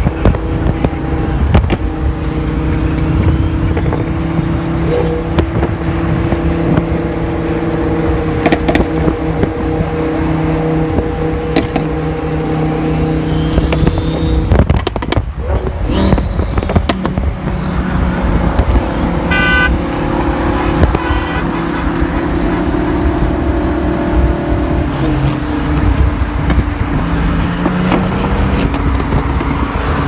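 Modified, turbocharged Audi R8 V10 cruising alongside on the freeway, heard as a steady, loud engine drone over road and wind noise, with scattered sharp pops. Two brief higher beeps, like a car horn, come about two-thirds of the way in.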